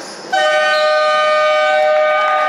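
Basketball scoreboard horn sounding the end of the game: a loud, steady two-tone blare that starts abruptly about a third of a second in.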